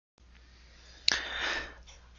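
A sharp intake of breath about a second in, a short hissy sniff-like inhale that fades out within about half a second, over a faint steady low hum.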